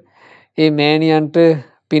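Speech only: a monk's voice in long, drawn-out, chant-like phrases, after a brief pause at the start.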